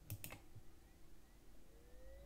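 Two quick, faint clicks of a computer mouse button near the start, then near silence.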